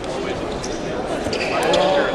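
Ambience of a large sports hall: background voices with scattered thuds and clicks from activity on the fencing pistes.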